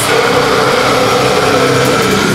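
Harsh metal vocal held as one long, slightly wavering note over a heavy distorted-guitar backing track.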